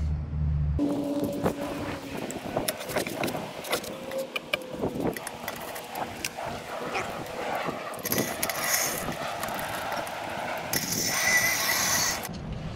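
Homemade metal-frame beach cart built on a salvaged Power Wheels base being wheeled over an asphalt driveway and onto grass. Its frame and wheels rattle and knock irregularly, with bursts of rustling near the end.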